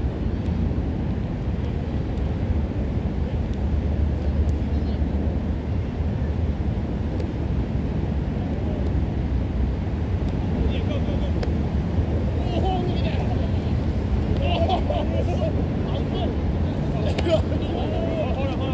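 Steady low outdoor rumble with distant players' shouts and calls across the field, coming in from about halfway and growing more frequent near the end.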